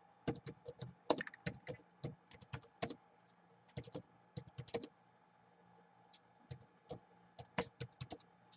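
Typing on a Gateway laptop keyboard: quick runs of light key clicks broken by short pauses, over a faint steady hum.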